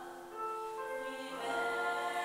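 Two female singers performing a classical vocal duet, holding long sung notes. The singing swells louder about a second and a half in.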